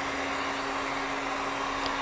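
Handheld electric heat gun running steadily: an even rush of air with a constant low hum.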